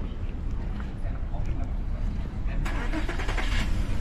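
Wind rumbling on an action-camera microphone as an electric kick scooter rolls over brick paving. A brighter rattly hiss comes in for the last second and a half.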